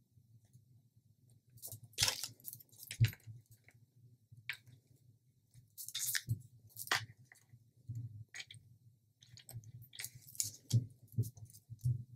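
Scattered light clicks and taps of thin wooden fish cutouts being picked up, knocking against each other and set down on a hard table, with soft handling noise from hands pressing them onto putty.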